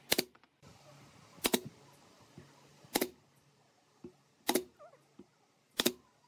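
Pneumatic brad nailer firing five sharp shots, about one every second and a half, driving brads into wood slats, with small clicks of the tool being repositioned between shots.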